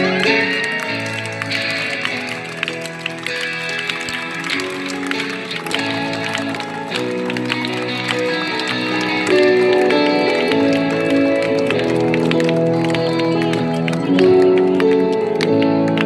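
A live pop-rock band playing an instrumental passage with no vocals: held chords that change every second or two over steady drum hits.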